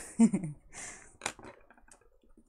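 A woman's brief vocal sound with falling pitch, then a short hiss and two light clicks.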